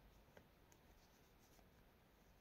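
Near silence, with faint handling of knitting needles and yarn and a single small tick about a third of a second in.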